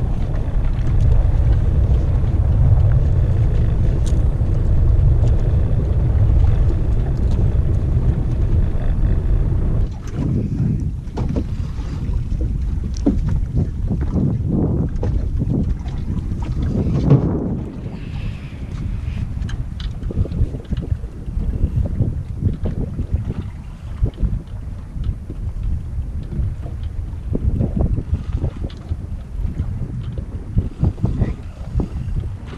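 Wind rumbling on the microphone aboard a small boat drifting at sea. It is heavy and steady for about ten seconds, then turns gustier and broken, with short irregular knocks.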